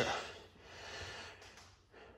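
A man's soft breath, one unpitched swell about half a second in, following the fading end of his speech.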